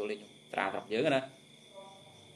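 A man preaching in Khmer in short phrases with pauses, over a faint steady high-pitched tone in the background.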